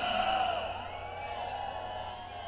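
The echo of a man's shout over a public-address system, ringing on and slowly fading, with faint wavering voices beneath.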